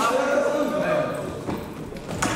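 Voices calling out in a reverberant sports hall, over running footsteps on the hall floor as boys take a run-up to vault a padded box.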